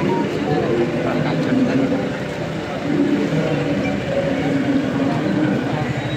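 A woman talking over a steady low background rumble.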